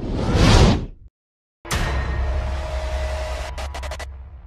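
Title-sequence sound effects: a whoosh that swells and cuts off about a second in, then a short silence. A sudden hit follows with a steady low drone under it, and a rapid stuttering glitch comes near the end.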